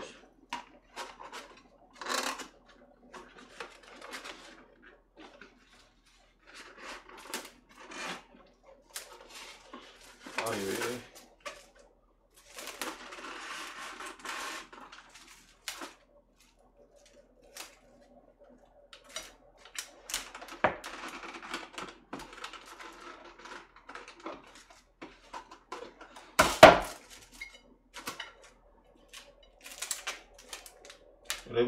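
Plastic cling wrap being handled: pulled from its box, torn and pressed over a plate of frozen dumplings, making crinkling and rustling with scattered small clicks and taps. One loud sharp knock sounds near the end.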